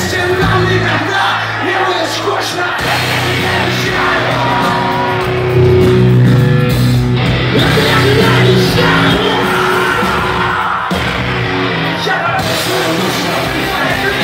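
Punk rock band playing live and loud, with voices singing and yelling over electric guitars and drums.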